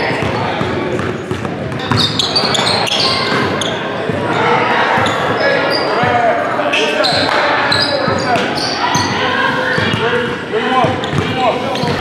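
A basketball dribbled and bouncing on a hardwood gym floor during a fast pickup game, echoing in a large gym. Sneakers squeak in short chirps and players call out in the background.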